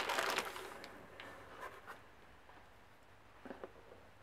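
Crumpled packing paper rustling as hands unwrap a polished stone, fading out within the first second. Then it goes quiet, with a few faint small ticks of handling.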